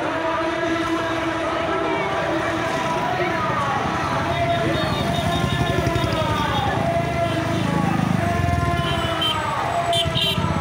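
A motorcade of cars and motorbikes passing, with sirens wailing over the engines and voices of onlookers. Engine noise swells as motorbikes pass close about eight seconds in.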